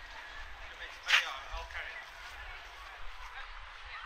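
Voices of people passing by, talking, with one short, loud cry about a second in.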